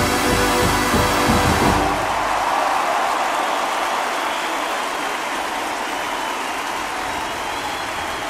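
A marching band's brass and drums playing, stopping about two seconds in, followed by a stadium crowd cheering and applauding.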